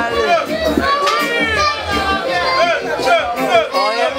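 A boy deejaying into a microphone through a sound system, his voice chanting without a break over a reggae riddim with a pulsing bass line.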